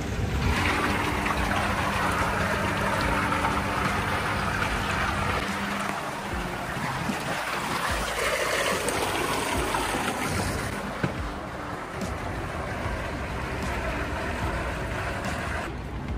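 Water churning and rushing in an outdoor whirlpool tub with its jets running, over a steady low hum for the first several seconds. The rushing eases about eleven seconds in.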